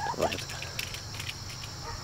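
Faint outdoor ambience around a chicken coop: a steady high insect drone with light ticking, and one short call from a chicken just after the start.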